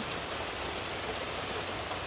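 Steady rain falling, an even hiss with no break.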